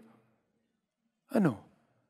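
A pause of over a second in a man's speech, then one short word, "ano", spoken with a falling pitch about a second and a half in.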